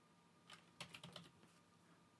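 Computer keyboard typing: about half a dozen faint keystrokes, starting about half a second in, as a short word is typed.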